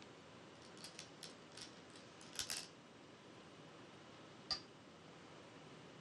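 Faint light clicks from the commentators' desk as the analysis board is worked: a quick irregular run of them between about one and three seconds in, then a single sharper click a little after four seconds.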